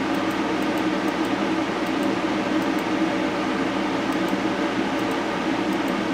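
Steady whirring hum and hiss of a running fan, unchanged throughout.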